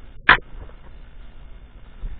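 A single sharp crack about a third of a second in, much louder than anything else, over the low rumble and rustle of a hand-held camera being moved.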